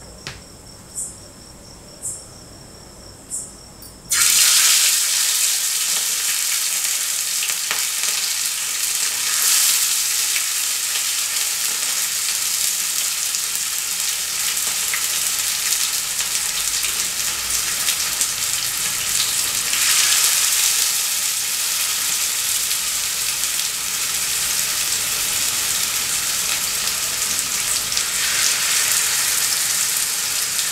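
Masala-coated catla fish steaks shallow-frying in hot oil in a flat pan. After a quiet start with a few faint crackles, a loud steady sizzle begins suddenly about four seconds in, as the fish goes into the oil, and keeps up throughout.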